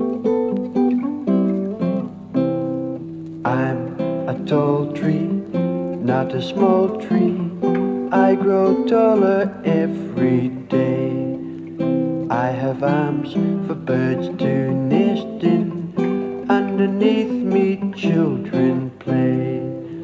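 Acoustic guitar music: a folk tune strummed and picked, with a melody line over the chords.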